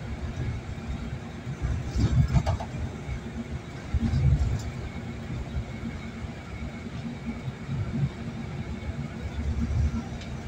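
Car driving on a busy highway: steady low road and engine rumble, with louder swells of rumble about two seconds and four seconds in.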